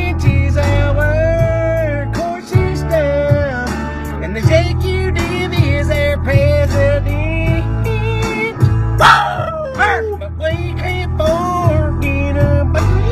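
A song playing: a sung melody over a steady bass line and a regular drum beat.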